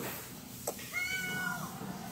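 A cat meowing once: a single drawn-out call of just under a second that drops in pitch at its end, just after a short click.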